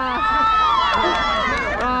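Several young people's voices overlapping in excited exclamations and laughter, with crowd chatter behind.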